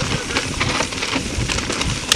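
Mountain bike tyres rolling fast over dry fallen leaves and dirt singletrack, a continuous crackling crunch with small clicks and a low rumble.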